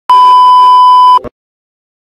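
A television colour-bars test-tone beep, one high steady tone lasting about a second that cuts off sharply, followed by a brief crackle of static.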